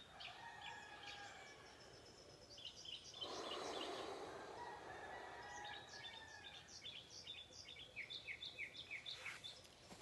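Faint outdoor birdsong, small birds chirping in quick repeated notes that grow busier in the second half, with a person's slow breath rushing softly about three seconds in.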